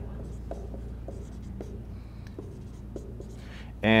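Dry-erase marker writing on a whiteboard: a scatter of short, faint taps and strokes as figures are written, over a steady low room hum.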